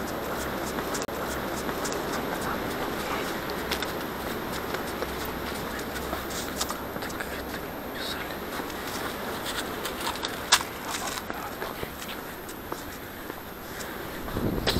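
Footsteps crunching on a snowy path with rustling against a body-worn action camera: a steady noise studded with small clicks, and one sharper click about ten and a half seconds in.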